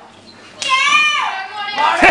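A boy's long, high-pitched shout or yell that falls in pitch, starting about half a second in and lasting about a second, among children at play; another voice starts up near the end.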